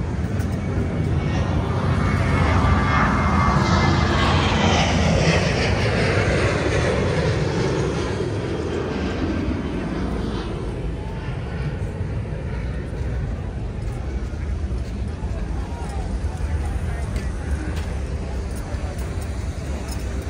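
An airplane flying over: its noise swells to a peak a few seconds in, then fades with a whine that falls steadily in pitch.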